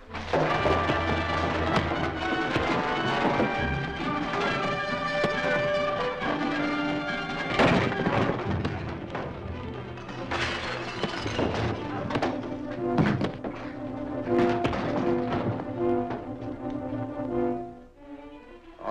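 Loud orchestral action score with the thuds and crashes of a fistfight over it, several heavy blows standing out.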